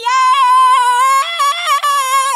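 A high-pitched cartoon voice singing one long, drawn-out note, its pitch stepping slightly up and down.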